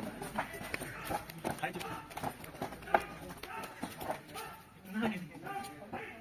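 Irregular footfalls and light knocks as people step along a row of low benches, with a group of men's voices chattering in the background.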